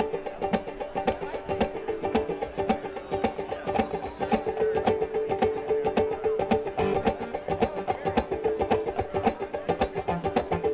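Live band playing an instrumental intro: picked banjo over held fiddle and accordion notes, with electric bass and drums keeping a steady beat.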